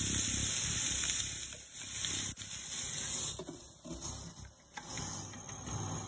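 Pork ribs sizzling in a hot stainless-steel oval pan: a steady high hiss with a few faint pops, easing slightly in the second half.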